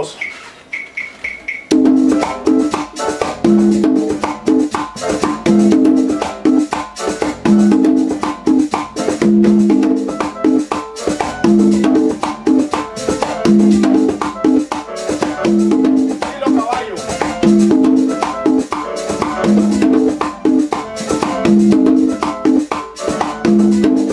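Tumbadoras (congas) played with the hands in a steady merengue pattern set to a 3-2 clave. Open drum tones repeat in a cycle of about a second and a half over a fast, continuous shaker-like rattle. The playing starts about two seconds in.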